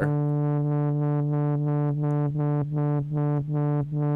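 Arturia Pigments software synth, a wavetable patch played from a QuNexus controller, repeating the same low note about three times a second over a held tone. Each repeat brightens as the filter envelope opens, then settles back.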